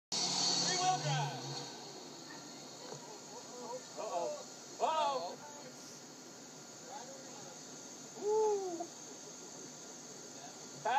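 A few short, wordless calls from people's voices, at about 1 s, 4 to 5 s, 7 s and 8.5 s, over a steady faint high-pitched insect drone. The truck's engine is not clearly heard.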